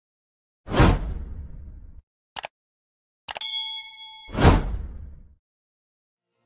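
Outro title-animation sound effects: a sudden whoosh with a low rumble that fades over about a second, a brief double click, then a bell-like ding ringing on several steady tones, cut off by a second whoosh that fades out before the end.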